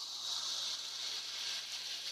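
Carbonated cola fizzing: a steady, high, even hiss of escaping gas that begins just after a small click.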